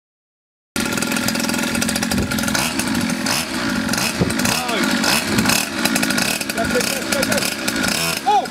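A moped's small engine running flat out, with a loud, rapid buzzing rattle that starts abruptly about a second in.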